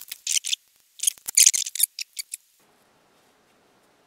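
A sheet of paper with a printed PCB pattern, cut out with scissors, being handled and laid down. It gives two crisp rustling bursts in the first two seconds, then a few light clicks.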